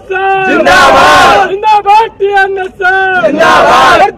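Loud male vocals singing a repetitive political praise song or chant, with held, sliding notes and two bursts of shouting or noise between the lines.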